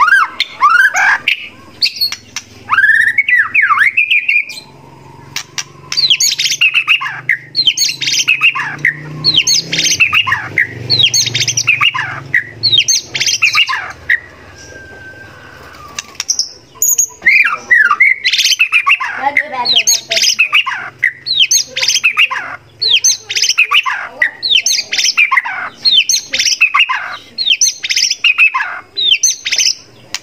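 White-rumped shama (murai batu) singing: loud, sharp, sweeping phrases repeated about once a second, with a pause of a few seconds near the middle. A low hum sits underneath through the first half.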